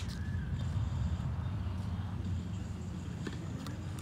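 Steady low outdoor rumble, with two faint sharp taps near the end.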